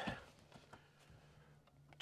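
Near silence: a 2023 Toyota Prius hybrid being switched on with no engine sound. There is only a faint steady low hum and a couple of faint clicks.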